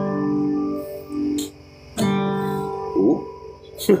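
Acoustic guitar chords strummed and left to ring: one chord sounds at the start and a second is struck about two seconds in. A brief vocal sound comes near the three-second mark and a laugh at the end.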